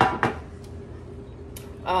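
A baking pan knocking twice on the counter as it is set down with its parchment paper, two quick sharp knocks, followed by a faint steady hum in the room.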